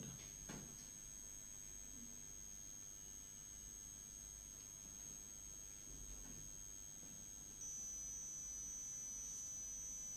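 Quiet room tone under faint, steady, high-pitched electronic tones; another high tone joins about seven and a half seconds in and the level rises a little.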